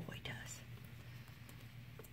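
A soft voice trails off in the first half second, then quiet room tone with a low steady hum.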